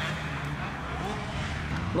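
Motocross motorcycle engines running steadily, with a faint rising rev about a second in.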